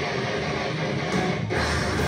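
A live rock band playing loud through a PA, led by electric guitar, with the low end growing heavier about one and a half seconds in.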